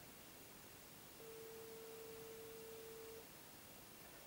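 A faint, steady, single-pitched tone held for about two seconds over near silence: the ringing tone of an outgoing call waiting to be answered.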